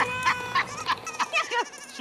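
A held, bleat-like call with a steady pitch lasting about a second, with several short sharp clicks over it and after it.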